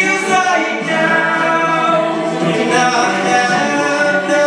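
High school jazz choir singing a cappella into handheld microphones, several voices holding chords in close harmony under a male solo voice.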